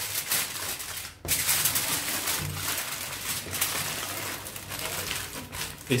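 Aluminium foil crinkling and rustling as hands fold and crimp it into a sealed pocket, with a brief pause about a second in.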